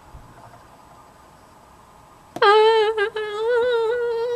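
A girl's voice humming a long held high note, starting about two and a half seconds in with a brief break about a second later. Before it there is only quiet room tone.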